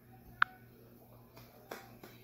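A single sharp snap from a person's hands about half a second in, with a couple of faint clicks near the end over quiet room tone.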